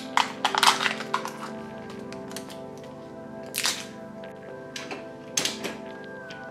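Crinkling and crackling of a Canon PIXMA inkjet print head's protective plastic packaging being handled and removed during the first second and a half, then two short sharp plastic clicks, about three and a half and five and a half seconds in. Steady background music plays underneath.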